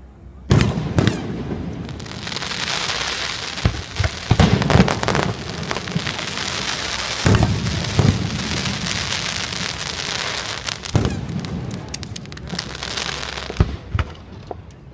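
Fireworks display: a string of sharp booms, the first starting suddenly about half a second in, over a continuous dense crackling that runs on between the bangs.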